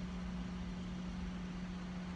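Steady low hum of an idling car heard from inside the cabin, one constant tone running through it.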